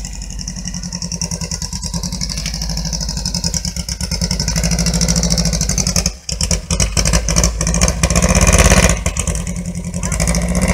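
VW Beetle's air-cooled flat-four engine with a short upswept exhaust, running with a rhythmic exhaust beat as the car moves slowly. The revs climb through the second half, with a brief dip about six seconds in, then ease off near the end.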